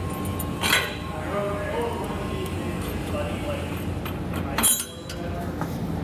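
Light metallic clinks of steel flat washers and nylon lock nuts being fitted onto carriage bolts, with two sharper clicks, under a steady low hum.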